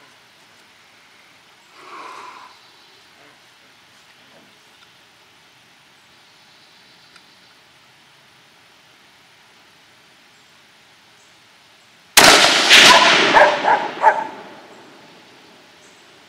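A single .223 Remington rifle shot from a Savage Model 10 bolt-action, sudden and loud about twelve seconds in, followed by dogs barking for about two seconds.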